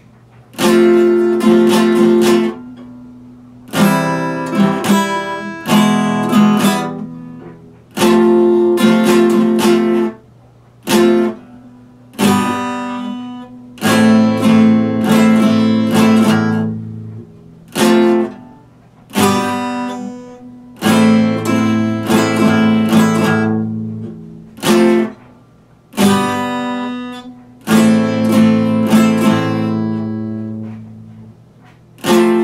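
Epiphone acoustic guitar played solo without singing: clusters of picked and strummed chords, each phrase ringing out and fading before a short break and the next.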